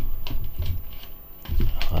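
A folded paper leaflet being handled and turned over, giving a few short crisp crackles and clicks.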